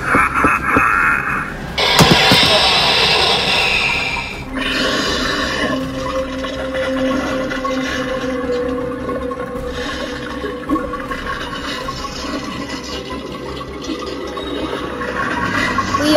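Horror-style background music. A laugh trails off at the start, a loud rushing whoosh comes about two seconds in and lasts a couple of seconds, then a low drone holds under a hazy wash.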